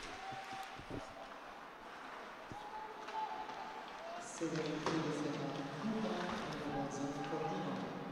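Ice hockey rink sound: sticks and puck give scattered clicks and skates scrape. From about halfway through, players' voices call out on the ice in long held shouts.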